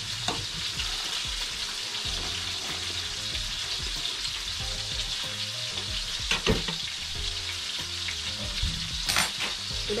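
Creamy seafood soup boiling in a large stainless-steel pot, a steady hiss, while a spoon stirs it. A few sharp clicks and knocks of utensils on the pot come through, the loudest about six and a half seconds in.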